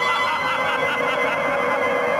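A steady, held high-pitched tone with overtones that stays unchanged in pitch throughout.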